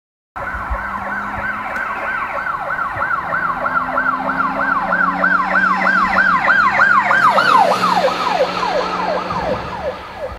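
Police car siren sound effect in a fast wail of about three sweeps a second over a low engine hum. It starts suddenly about half a second in and grows louder. Near the end its pitch drops and it fades, as a siren does when the car passes.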